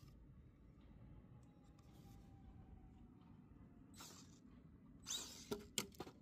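Near silence with a few faint scuffs and clicks, and a short rustling burst about five seconds in.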